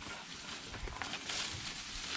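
Leafy cut tree branch rustling and scraping as it is dragged across grass, a soft continuous rustle with a few small snaps.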